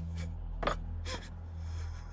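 A tearful voice gives a few short, catching gasps or sobs, about half a second apart, over a steady low hum.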